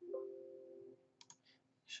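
A short computer alert tone made of a few steady pitches, starting just as Export is pressed and fading away within about a second, followed by two or three faint mouse clicks.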